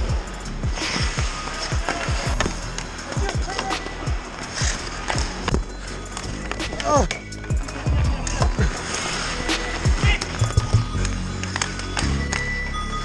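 Ice hockey play close around the net: skate blades scraping and carving the ice, with frequent sharp clacks of sticks and puck against pads, posts and boards, and a couple of short shouts from players.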